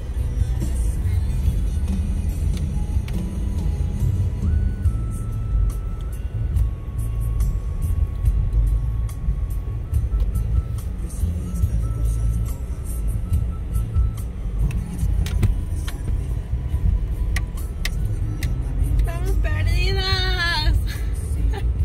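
Steady low rumble of a car driving slowly, heard from inside the cabin, with music playing faintly over it. A voice comes in near the end.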